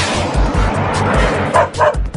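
Cartoon soundtrack music with a steady beat under a rushing jet hiss, then two quick dog yips near the end.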